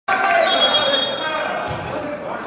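Players' voices calling out on an indoor basketball court, with a basketball bouncing once on the hardwood-style gym floor near the end, echoing in the large sports hall.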